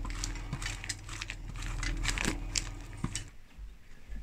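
Scattered light clicks and clinks of kitchen handling at a baking tray, over a steady low electrical hum; the hum stops a little after three seconds in.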